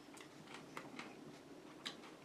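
Faint, quick, irregular clicks of a person eating and handling food at a table.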